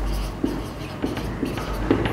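Marker pen writing on a whiteboard: a handful of short strokes as a word is written.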